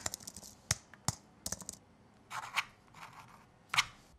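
Computer keyboard keys clicking in a quick run of typing for the first couple of seconds, then a pen scratching across paper in three short strokes, the last the loudest.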